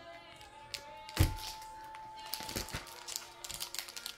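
Foil hockey card pack handled and torn open: scattered crinkles and clicks, a sharp thump about a second in, and a quick run of crackles near the end as the wrapper tears.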